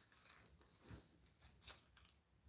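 Near silence, with two faint, short mouth sounds about one second and a second and a half in: a man chewing a chocolate with ground espresso beans in it.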